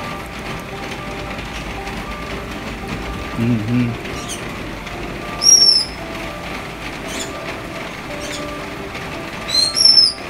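Short, sharp, high-pitched chirps from green-cheeked conures: one loud call about halfway through, a few fainter ones, and a quick pair near the end.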